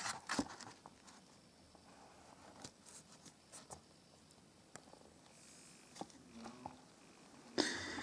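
Faint handling of cardboard and paper packaging: a few soft scattered taps and clicks in a mostly quiet room, with a louder rustle of card being moved near the end.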